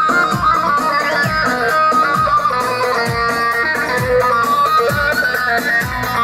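Kurdish halay dance music: a fast, ornamented plucked-string melody over a steady low drum beat.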